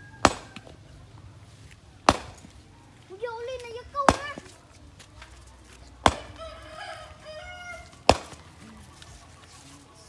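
A long-handled hand tool striking rocky ground and stone, five sharp hits about two seconds apart, as rocks are dug out.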